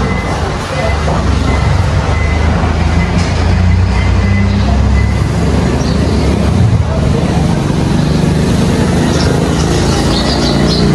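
An engine running steadily nearby, a continuous low rumble.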